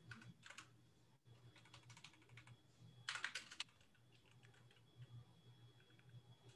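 Faint typing on a computer keyboard, in short bursts of quick keystrokes, the loudest burst about three seconds in.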